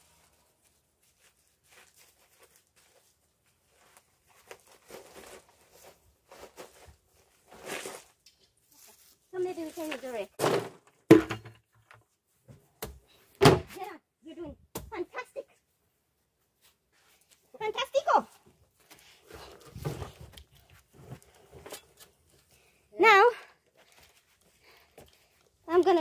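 Snatches of people talking, too unclear to make out, with two sharp knocks about two seconds apart near the middle.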